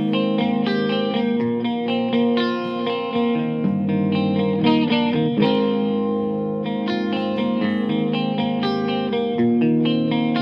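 Electric guitar played through a miked tube guitar amp whose preamp runs 1960 and 1963 Philips ECC83/12AX7 tubes in V1 and V2 and a Tungsram ECC83 in V3. Chords and picked notes ring out one after another.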